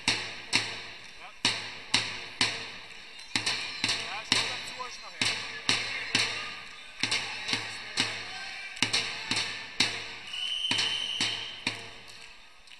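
Loud, sharp claps echo through a sports hall, irregularly about twice a second, from spectators cheering on a wrestler. Near the end a shrill referee's whistle sounds for about a second.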